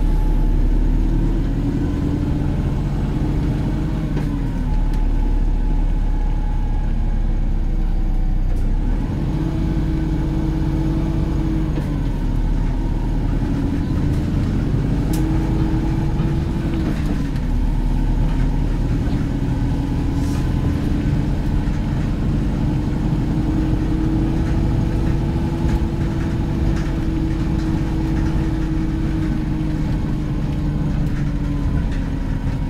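Volvo B5LH hybrid double-decker bus heard from inside the lower deck while under way: its diesel-electric drivetrain runs continuously, the pitch climbing and dropping back three times, then holding steady.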